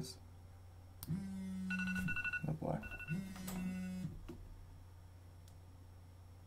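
A mobile phone going off: two steady low buzzes of about a second each, with short, high electronic beeps sounding during and between them.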